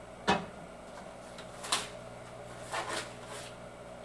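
A sharp knock as a wooden drawer is set down on a surface, followed by a few fainter knocks and handling sounds over a low room hum.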